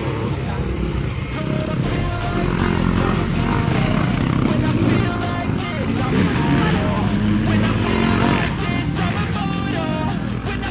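Dirt bike engines revving as motocross bikes ride past, mixed with background music.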